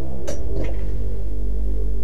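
Film score music with deep sustained low notes, and a brief swish about a third of a second in.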